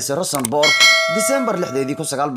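Bell-chime sound effect of a YouTube subscribe-button animation. It strikes about half a second in and rings on steadily to the end, over a man's voice.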